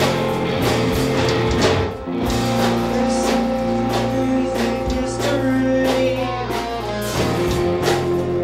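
A rock band playing live and loud: electric guitars, one a hollow-body, over a drum kit, with a brief dip in level about two seconds in.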